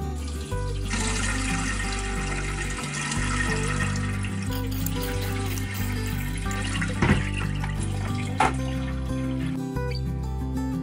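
Water poured from a bucket through a shemagh cloth into the stainless steel upper chamber of a gravity water filter: a steady pour that starts about a second in and stops near the end, with two sharp knocks in its last few seconds. Acoustic guitar music plays underneath.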